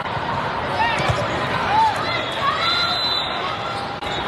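Indoor volleyball play in a large, echoing hall: sneaker squeaks on the court and a ball contact about a second in, over steady crowd chatter from the stands and neighbouring courts.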